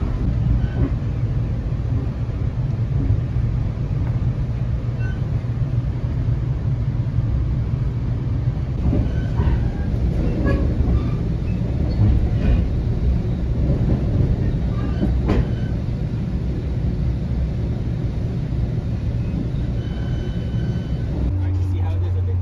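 Interior noise of a moving FrontRunner commuter rail car: a steady low rumble with occasional clicks and knocks from the wheels on the track. Near the end it changes abruptly to a steady low hum of a train standing at a platform.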